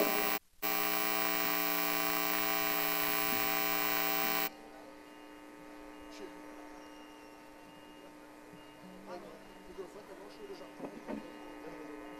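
Electrical mains hum and buzz from the stage PA system, a dense chord of steady tones. It cuts out for a moment just after the start, then drops sharply to a faint background buzz about four and a half seconds in. A few faint knocks and murmurs come near the end.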